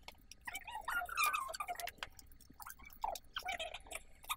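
Clothes hanger clicking against a wooden clothes rack and knit fabric rustling as a jumper is hung up, with many small sharp clicks and brief faint snatches of a voice.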